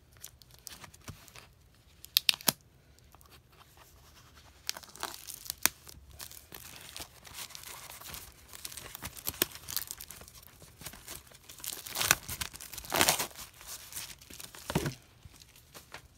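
Clear plastic shrink wrap being torn open and peeled off a hardcover booklet, crinkling in irregular bursts that are loudest about twelve to thirteen seconds in. A couple of sharp clicks come about two seconds in.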